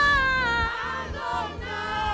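A woman leading a gospel chorus into a microphone, with a congregation singing along. A long sung note slides gently downward in the first second before the melody moves on.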